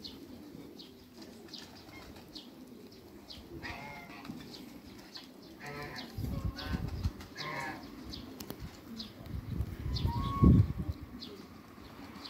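A grazing flock of Muscovy ducks and barnacle geese calling: frequent short high chirps, and a few longer calls about four, six and seven and a half seconds in. Bursts of low noise come about six seconds in and again around ten seconds, the loudest just past ten seconds.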